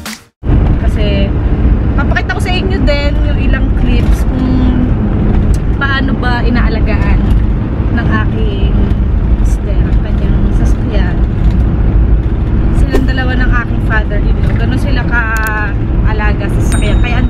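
Mitsubishi Pajero's cabin noise on the move: a loud, steady low road and engine rumble that cuts in abruptly after a brief gap at the very start, with a woman talking over it on and off.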